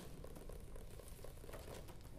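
Persian finger-roll technique: fingers dropping onto a surface in rapid cascades, the strokes so fast they blur into an even pattering hum.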